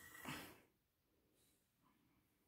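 Near silence: room tone, with a brief faint sound in the first half second.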